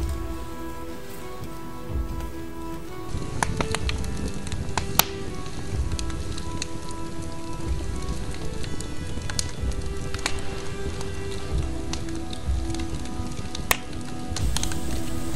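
Background music of held, droning tones over a wood fire crackling, with sharp pops scattered throughout; the loudest pops come about five seconds in and just before the end.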